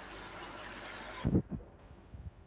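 Potatoes, onions and bitter gourd frying in a metal karahi: a steady sizzle that cuts off abruptly about a second in, followed by two low thumps.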